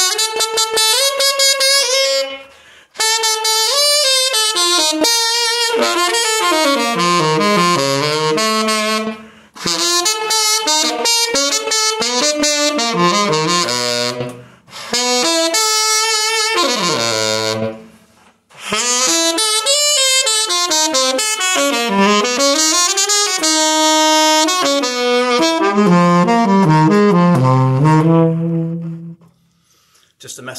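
Yamaha 23 tenor saxophone played solo, noodling quick runs up and down its range in flowing phrases. The phrases are broken by a few short pauses, and the playing stops just before the end.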